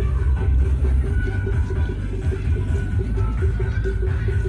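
Loud, bass-heavy music with a steady beat.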